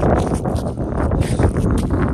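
Strong wind buffeting the microphone, a loud, uneven rumble with gusty surges.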